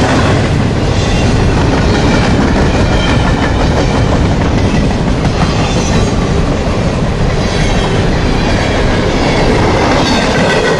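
Double-stack intermodal freight train's container well cars rolling past close by: a loud, steady rumble and clatter of steel wheels on the rails.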